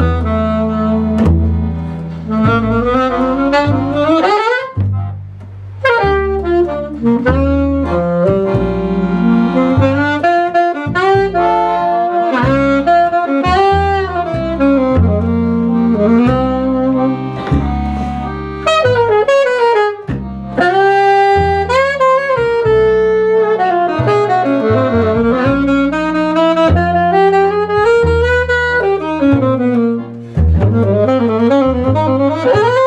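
Alto saxophone playing a swing jazz solo line with bends and slides, over a double bass part; the saxophone breaks off briefly about five seconds in.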